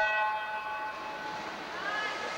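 Swim-race starting horn sounding one steady, loud tone that stops about a second in, signalling the start of the race.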